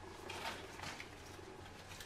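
Faint rustling of salad leaves being handled, loudest about half a second to a second in, over a steady low room hum.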